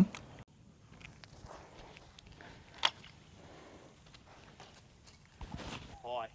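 Faint rustling and shuffling, like footsteps and handling on grass, with one short, sharp click about three seconds in.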